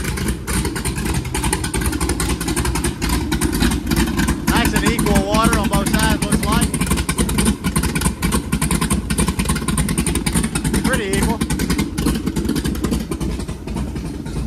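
Skip White 551 hp small-block Chevrolet stroker V8 in a Donzi 16 running steadily on its first start-up, with cooling water splashing from the sterndrive onto concrete.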